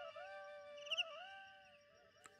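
Bamboo flute (bansuri) softly repeating a small rising-and-falling figure that fades away, dying out about three-quarters of the way through.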